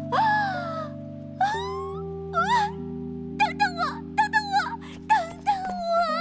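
Soft background music of sustained tones with a cat meowing over it: a long meow at the start, then single mews, and a quick run of short mews in the middle.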